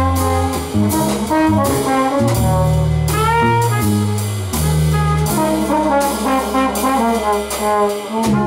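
Live jazz quartet of trumpet, trombone, bass and drums. Trumpet and trombone play held notes together over a low bass line, with cymbals struck steadily throughout.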